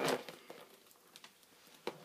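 Handling of a leather handbag and its zippered pouch: light rustling and small clicks of the hardware, with one sharp click near the end.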